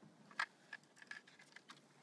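A few faint plastic clicks and taps as a tube of pool test strips is handled and a strip shaken out of it. The sharpest click comes about half a second in.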